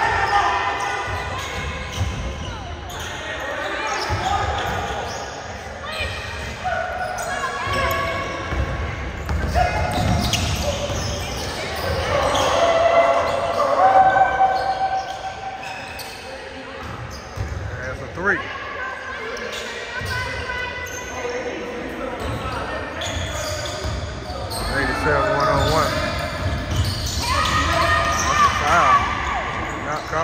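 Basketball bouncing on a hardwood gym floor as it is dribbled and played, with players' voices and calls throughout.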